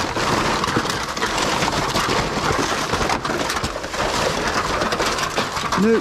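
Black plastic rubbish bags and loose rubbish rustling and crinkling as they are pulled about by hand, a steady crackling noise.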